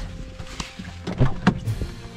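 Car door being unlatched and pushed open from inside, with a few sharp clicks and knocks from the handle and latch.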